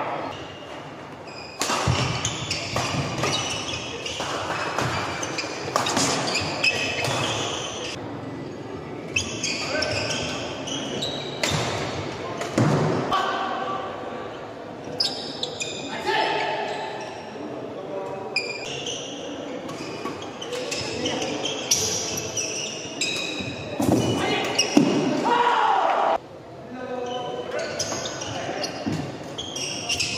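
Doubles badminton play in a large echoing hall: sharp racket hits on the shuttlecock and footwork on the wooden court, scattered throughout, with players' shouts and voices.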